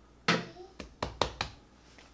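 Hands handling a sheet of stretched pizza dough on a countertop: a sharp knock, then four quick thumps and slaps about a fifth of a second apart as the dough is lifted and folded over.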